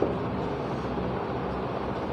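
Steady background noise with a low hum and no speech: the room tone of a classroom.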